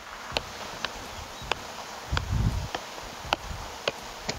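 Soccer ball juggled on the laces of a cleat: a short tap of ball on boot about every half-second, about seven touches in a steady rhythm, over a steady outdoor hiss. A brief low rumble comes a little past two seconds in.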